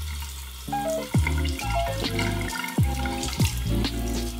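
Water running from a bathroom sink tap while hands splash it onto the face, rinsing off a clay mask. Background music with deep bass notes and repeated downward slides plays over it.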